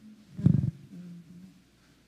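A woman's voice: a low, creaky murmur about half a second in, followed by a short, quieter hum with closed lips.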